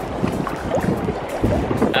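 Shallow tidal water moving and sloshing over rocks around a wader's legs, with wind rumbling on the microphone.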